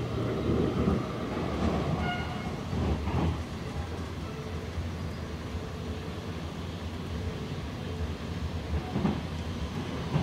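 Steady low rumble of a passenger train running along the track, heard from inside the carriage, with a brief faint high squeal about two seconds in.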